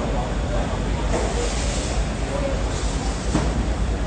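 Busy fish-market ambience: a steady low rumble under distant chatter, with a brief hiss in the middle and a single sharp knock a little after three seconds in.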